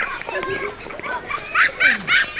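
A dog yapping in a quick run of short high barks, about four a second, starting a little past halfway, over faint voices.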